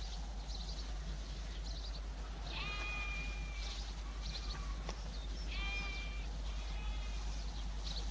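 A sheep or goat bleating twice, each call drawn out for about a second, over faint repeated high chirps and a steady low hum of the soundtrack.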